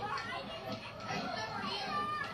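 A group of children's voices chattering and calling out over one another, played back from a documentary clip through loudspeakers in a lecture room.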